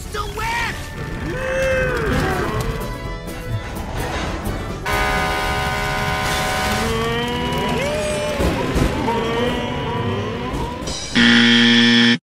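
Animated-film soundtrack: character voices and exclamations over music, with a held chord of steady tones about five to seven seconds in. Near the end a loud, steady buzzer tone comes in, the wrong-answer signal of a guessing game.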